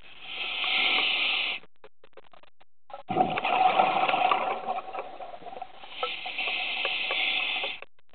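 Scuba diver breathing through a regulator underwater: a hiss of inhaled air for about a second and a half, a short pause, then a longer, rougher rush of exhaled bubbles with a low rumble, and another inhale hiss near the end.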